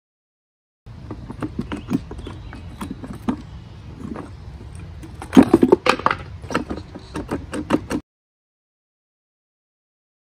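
Steel gears and shafts of a Peugeot BA10 five-speed manual transmission clunking and clinking against the case as the gear cluster is worked loose by hand: a run of irregular metal knocks with a louder burst of clanks a little past halfway. It starts about a second in and cuts off suddenly about two seconds before the end.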